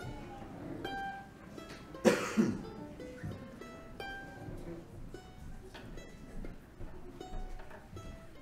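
Mandolin and acoustic guitar softly picking scattered single notes between songs. A loud cough about two seconds in.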